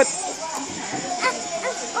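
Children's voices in the background, low and wavering, with no clear words.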